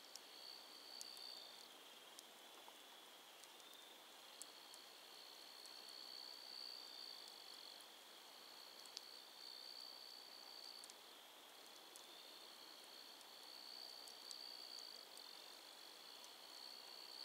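Faint, steady high-pitched trilling of night insects such as crickets, in long runs broken by short gaps, with a few faint crackles and pops from the campfire's glowing embers.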